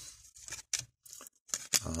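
Trading cards being slid and flipped through by hand: a few short, soft scuffs of card against card.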